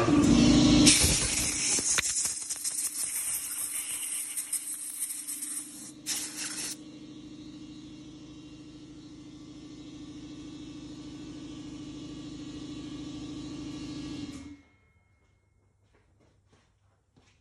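Compressed-air blow gun hissing loudly for about six seconds, with a short second blast just after, blowing off the seat cutter and its pilot. Under it a steady motor hum runs until it cuts off about a second and a half before the end.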